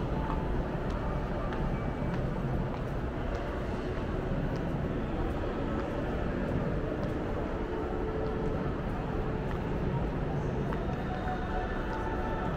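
Indoor shopping-mall atrium ambience: a steady wash of indistinct distant voices over a constant low rumble, with a few faint clicks.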